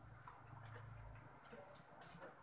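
Faint rustle of a paper instruction sheet being handled and moved aside, over a low steady hum.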